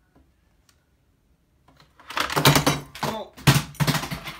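Near silence for about two seconds, then a couple of seconds of loud, close rustling and knocks from handling.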